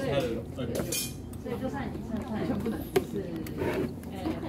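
Voices chattering in the room, with light knocks and clinks of a paper drink cup being handled and set down; a single sharp click about three seconds in is the loudest sound.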